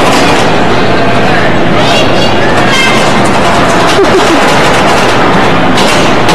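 Bumper cars running, a loud, steady rattling rumble with a few knocks from cars bumping. Riders' voices shout faintly over it.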